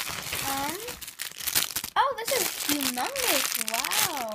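Plastic packaging crinkling and rustling as a packaged squishy toy is pulled out of a plastic mailer bag, with a few short wordless vocal sounds gliding up and down in pitch.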